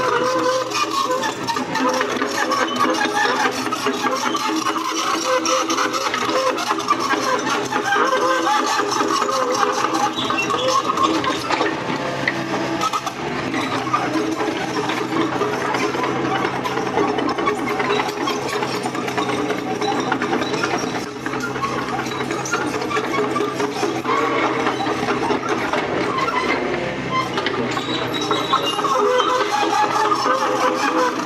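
Mini excavator's diesel engine running steadily, heard from the operator's seat, with the hydraulics working as the machine grades the ground. A brief dip in level comes about two-thirds of the way through.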